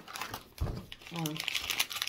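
Paper packing crinkling and rustling in quick crackles as it is pulled out of a cardboard dumbbell box, with a dull low bump about half a second in.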